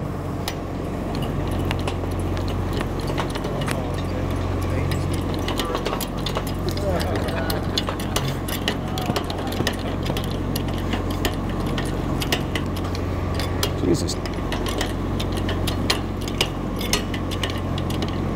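Manual hydraulic engine hoist being pumped by hand to lift a man in a harness: a long run of irregular metal clicks and clinks from the jack handle and hoist hardware. A steady low hum runs underneath.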